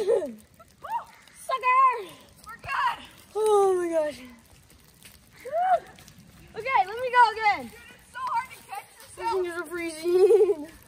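Young people's voices shouting and whooping in a string of about eight short, high-pitched calls. Several of the calls swoop up and then fall away in pitch.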